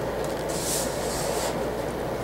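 Bone folder scraping along the groove of a paper scoring board, scoring a sheet of paper: two short hissy strokes, the first about half a second in, over a steady low hum.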